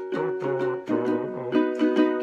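Lanikai ukulele strummed in a steady rhythm, about four strums a second, its chords ringing between strokes.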